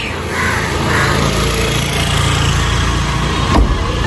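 Small hatchback's engine idling low and steady, with a car door slamming shut near the end.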